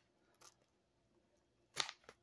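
Mostly quiet hand-peeling of a sticky plastic magazine wrapper: a faint tick about half a second in, and one short, sharp crackle of the plastic near the end.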